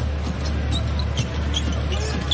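A basketball being dribbled on a hardwood court, with short scattered ticks and a steady low hum of arena music and crowd behind it.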